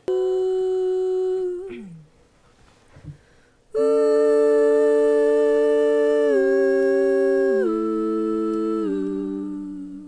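Three multitracked female backing-vocal harmony parts played back soloed. A single held note slides down a little under two seconds in; after a short gap, from about four seconds in, the three voices hold close-harmony chords that step down together three times and fade near the end.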